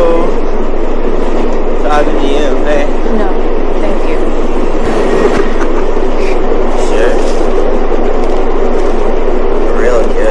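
Steady running noise of a subway train heard from inside the carriage, with a few brief, indistinct voices over it.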